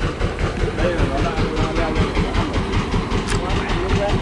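Wooden fishing boat's engine running with a steady, rapid knocking rhythm as the boat gets under way after the anchor is pulled up.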